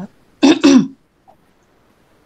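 A woman clearing her throat twice in quick succession.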